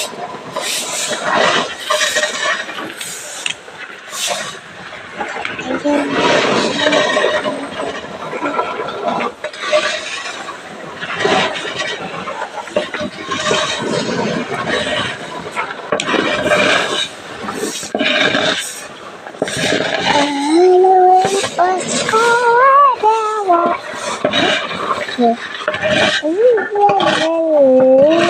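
Grain being raked and swept across a concrete drying floor: repeated short scraping rattles. In the last several seconds, pitched calls rise and fall in pitch over the scraping.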